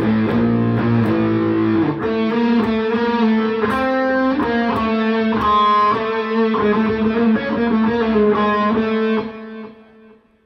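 Electric guitar with light distortion playing an A Phrygian dominant scale run. It opens with a few low notes held for about two seconds, then moves into a quick line of single notes that fades out about nine seconds in.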